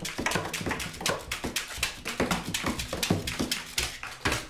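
Informal acoustic music: a strummed acoustic guitar with quick tapping percussion played by hand on objects.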